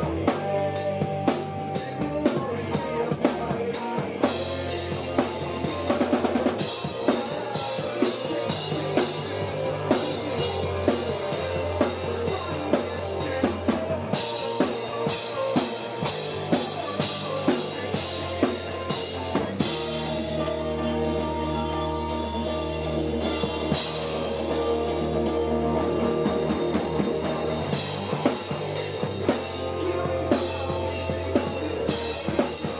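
Live band playing: a drum kit with steady bass drum, snare and cymbal hits under electric guitars and bass guitar.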